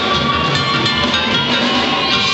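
Loud live duranguense band music played on stage, with drum kit and band, heard from within the audience.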